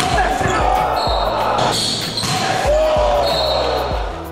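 Live sound of an indoor basketball game: voices and shouts echoing in a gym, with a ball bouncing and squeaks on the court, one gliding down about two and a half seconds in.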